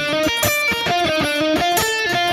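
Ibanez electric guitar playing a quick run of single picked notes, about seven a second, over an E flat major seven chord.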